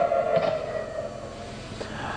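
Air-raid warning siren sounding a steady tone that fades away over the two seconds: the alarm for incoming rockets.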